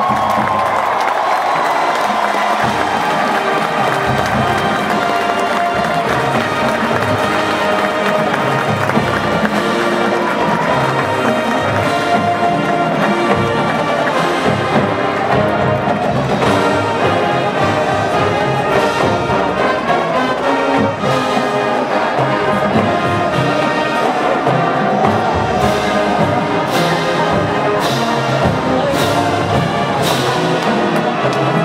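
Marching band playing: full brass section with drums and front-ensemble percussion, sustained and loud, with several cymbal crashes near the end.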